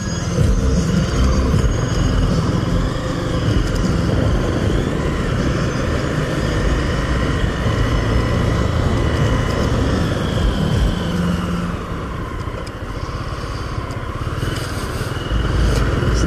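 Motorcycle engine running steadily under way, heard from the rider's seat with road and wind noise, easing off about twelve seconds in as the bike slows.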